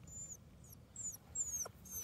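Faint, high, thin bird chirps: about five short notes, each sliding downward in pitch and spaced irregularly.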